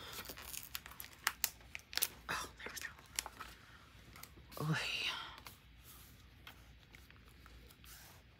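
Paper sticker sheet crinkling and crackling in the hands as stickers are peeled off, with a run of sharp snaps in the first few seconds and fainter scattered clicks later. A brief murmur of a voice comes about halfway through.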